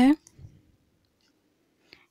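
A woman's spoken word ending, then near silence, broken only by a faint brief sound about half a second in and a tiny tick near the end.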